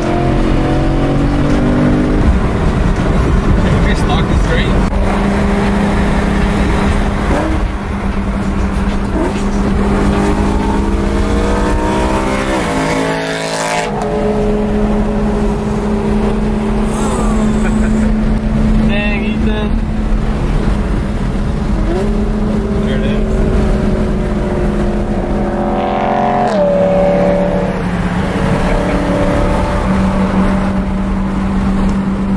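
BMW M3's V8 heard from inside the cabin at freeway speed: a steady engine drone over road noise. The pitch rises as it accelerates about ten seconds in, breaks off suddenly a few seconds later at a shift or lift, and drops again near the end.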